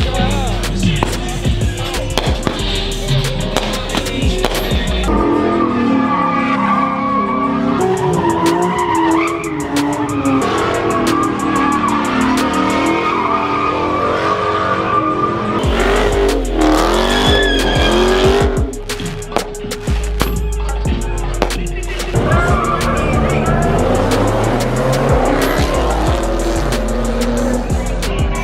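A car doing a burnout in front of a crowd: engine revving and tyres squealing, mixed with music that has a heavy bass line, which drops out for stretches.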